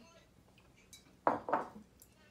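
Two clunks of crockery about a quarter second apart, as a ceramic coffee mug and a glass cake dome are handled on a granite countertop.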